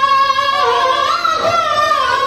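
A high-pitched voice chanting a mourning elegy in paish-khawani style, holding one long, wavering note. The note rises about a second in, then eases back down.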